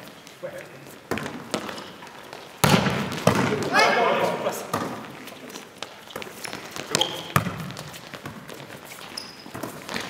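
A volleyball being struck during rallies: a few sharp slaps of the ball off players' hands and forearms, ringing in a large sports hall. Players' shouted calls come in the middle.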